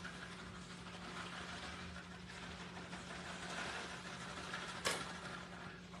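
Faint rustle of shredded cheese being shaken from a plastic bag onto a tortilla in a pan, over a steady low hum, with a short crinkle of the bag about five seconds in.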